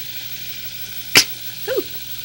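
A saucepan of hot sauce sizzling on a gas burner: a steady, even hiss. One sharp click comes about a second in.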